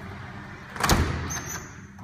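A single sharp clunk from a tilt-and-turn balcony door being handled, a little under a second in, followed by a brief faint high tone.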